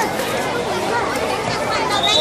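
Many children's voices chattering and calling at once, a steady babble with no one voice standing out.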